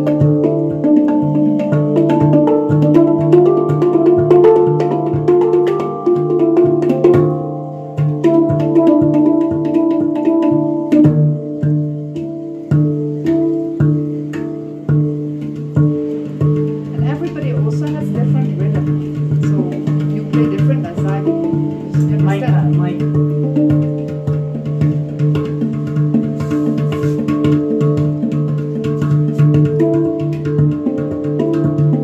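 Steel handpan (hang drum) played by hand: a steady stream of quick finger taps on its tone fields, the struck notes ringing on and overlapping over a sustained low tone.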